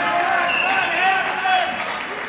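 Several spectators' voices calling out at once, overlapping and raised, in a gym hall.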